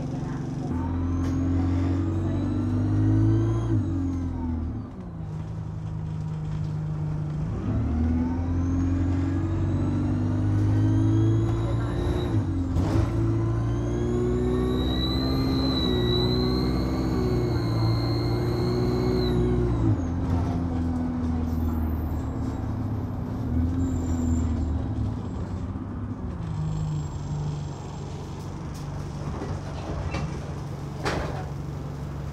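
Alexander Dennis Enviro200 single-deck bus's diesel engine accelerating with turbo screams, heard from inside the cabin: a high whine that rises in pitch as the bus pulls. The first pull is short, from about a second in until about four seconds. The second is longer, from about eight seconds to twenty, and the engine's note steps as the gearbox changes up.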